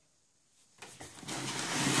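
Near silence, then, a little under a second in, a rising noise of a handheld camera being handled and moved close to its microphone.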